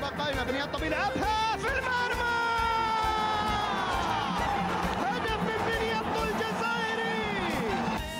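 Football match commentator shouting excitedly as the goal goes in, then holding one long drawn-out goal cry that slowly falls in pitch for about five seconds, over background music.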